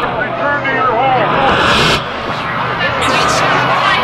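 Electronic music from a DJ mix: a voice sample bends in pitch over a dense, noisy backing with a steady bass line.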